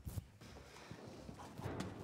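Faint, irregular knocks and footfalls on the stage as costumed children move across it, a few close together near the end.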